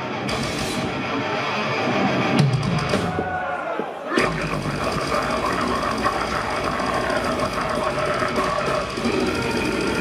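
Deathcore band playing live through a concert PA: distorted electric guitar and drums. About four seconds in, the full band comes in abruptly, dense and heavy in the low end, and carries on at a fast, driving pace.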